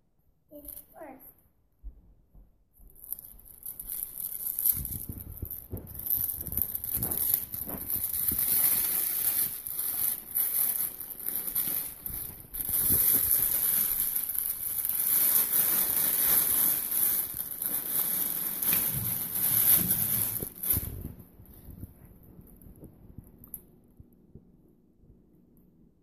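Plastic gift wrap crinkling and tearing as it is pulled open by hand, a long run of crackling that stops about three seconds before the end.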